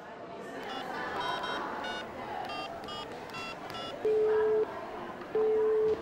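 Telephone call sound effect: a string of short phone keypad beeps as a number is dialled, then two ringback tones, each a steady low tone of about half a second, over steady background noise.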